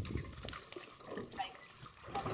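Oars of a rowing eight working through the stroke: blades splashing in the water and oars knocking in their gates, in surges about a second apart, with a few short squeaks and wind rumble on the microphone.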